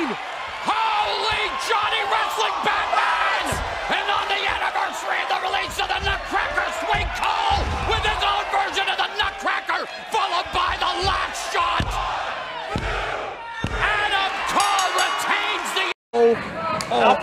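Arena crowd noise with cheering and shouting, broken by several heavy thuds of wrestlers' bodies hitting the ring mat.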